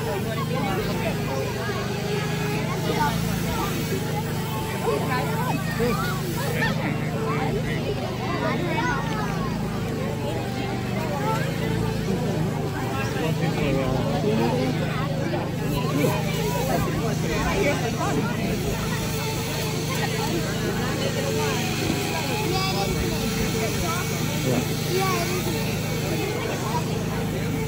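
Chainsaw cutting into a block of ice, its motor running with a steady drone under crowd chatter.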